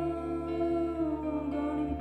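Live band music, slow and sustained: a woman's voice holds one long note over guitar and bass, the note sagging slightly in pitch after about a second. The chord changes near the end.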